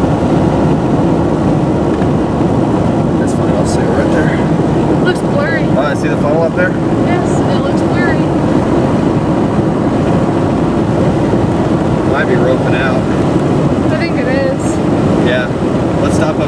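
Steady road noise inside a moving car: an even rumble of tyres and wind in the cabin.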